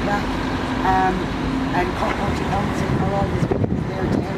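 A woman speaking in short phrases outdoors, over a steady low rumble of road traffic.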